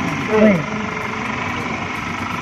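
Truck engine running steadily at idle, a continuous even hum with no change in pace.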